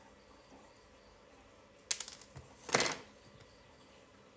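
Small hard objects handled on a wooden workbench: a quick run of sharp clicks about two seconds in, then a louder clattering rattle just before the three-second mark, as the circuit board and metal tweezers are picked up.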